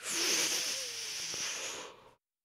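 A man's long, breathy hiss of breath close to the microphone, lasting about two seconds and cutting off abruptly.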